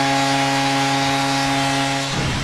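Arena goal horn sounding one long, steady tone over a cheering crowd, signalling a home-team goal.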